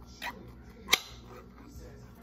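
Food packaging being opened: a brief rustle, then one sharp snap just under a second in.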